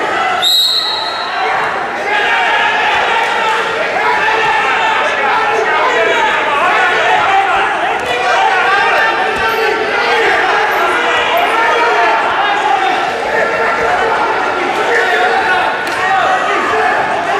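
Referee's whistle blown once, a high tone of about a second starting about half a second in, restarting the wrestling bout. Many overlapping voices of spectators shouting and calling out carry on throughout in a large echoing hall.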